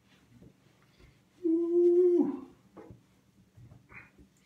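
A man's closed-mouth hum of satisfaction, 'mmm', held on one pitch for just under a second and dropping at the end. Around it is faint rubbing of a towel dabbed on the face.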